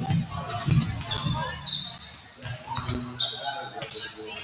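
Volleyballs being hit and bouncing on a hardwood gym floor during warm-up: a string of irregular thumps, several a second.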